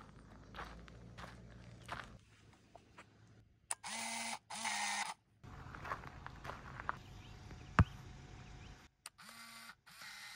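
Camera mechanism: two short whirring bursts, a single sharp click about eight seconds in, and another short whirr near the end. A few soft footsteps on gravel at the start.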